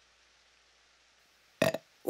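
A cartoon character's short, loud burp, breaking suddenly out of near silence near the end.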